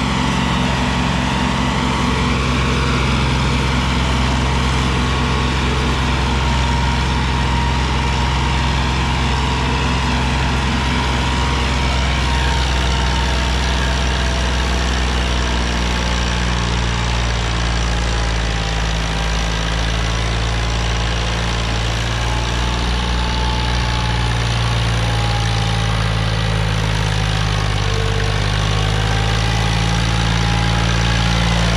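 Sonalika DI-35 tractor's three-cylinder diesel engine running steadily under heavy load while hauling a trolley heaped with sand. Its note dips and rises a little past halfway through.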